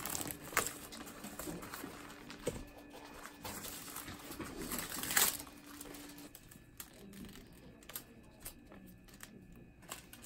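Clear plastic adhesive drape crinkling in scattered sharp crackles as gloved hands smooth it over the foam of a wound-vac dressing, with a louder crackle about five seconds in.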